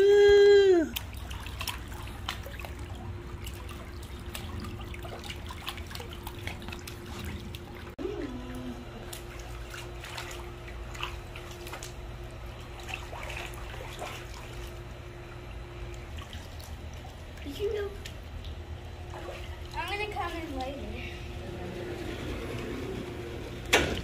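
Pool water being splashed and trickling as children kick their feet in a small splash pool, over a steady faint hum. A child's drawn-out voice opens it, and short bits of children's voices break in now and then.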